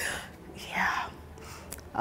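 A woman's soft, breathy exhale without voice, lasting about half a second, around the middle.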